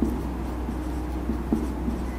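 Marker pen squeaking on a whiteboard in short handwriting strokes, over a steady low hum.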